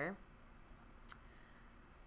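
Quiet room tone with a single light click about a second in, from hands handling things on a tabletop.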